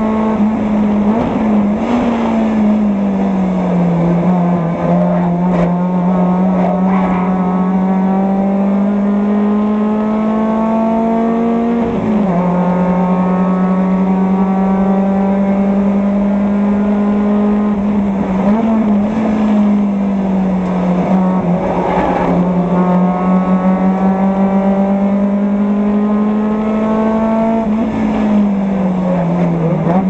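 Mazda Miata Spec Miata race car's four-cylinder engine at racing speed, heard from inside the car, climbing in pitch in long slow sweeps. Its pitch drops briefly about twelve seconds in, again around eighteen seconds, and near the end.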